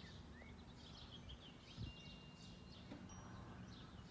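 Faint outdoor quiet with birds chirping softly, and wind chimes sounding as a single thin high ringing tone for about a second near the middle. A soft low bump comes a little before that.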